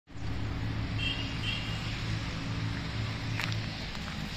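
Tata Vista's diesel engine idling steadily, with two short high chirps about a second in and a couple of clicks near the end.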